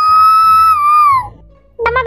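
One long, high-pitched held note, steady and clear, with a rising start and a falling end about a second and a half in.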